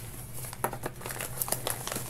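Paper mailer and cardboard packaging being handled and pulled open by hand, with irregular crinkles and light crackles.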